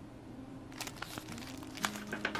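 Paper rustling and crinkling as a printed booklet and paper inserts are handled and shuffled, starting about a second in.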